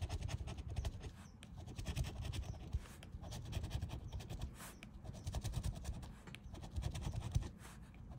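Scratching the coating off a lottery scratch-off ticket: rapid, repeated short scraping strokes across the card, with pauses between runs.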